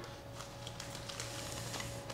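Faint rustling of a trading card being slid into a soft clear plastic sleeve, over a faint steady hum.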